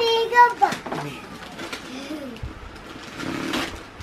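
Speech in a small room: a woman says "box" at the start, followed by quieter children's voices, with a brief noisy rustle near the end.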